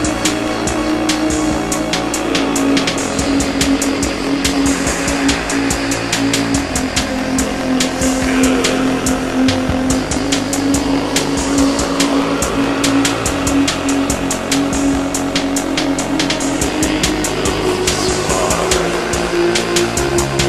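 Minimal wave electronic music on analog synthesizers: a strong held low synth tone that steps to a new pitch a few times, a fast steady ticking beat, and several slow swooping sweeps that rise and fall.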